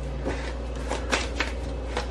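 Index cards being handled on a wooden floor: a few short clicks and taps over a steady low hum.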